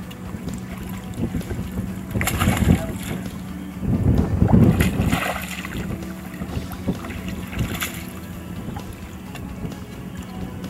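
Water splashing as a hooked fish thrashes at the surface and is scooped into a landing net by a wading angler, loudest about two seconds in and again from four to five and a half seconds, with a smaller splash near the end. Wind buffets the microphone throughout, over a steady low hum.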